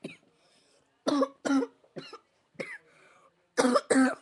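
A boy coughing several times in short fits, two close together a second in, a couple of lighter ones after, and a harder pair near the end.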